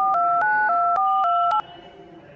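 Touch-tone keypad beeps of a phone number being dialled on a smartphone: about six quick two-tone beeps in a row, each a different key, with sharp clicks between them, stopping about 1.6 seconds in.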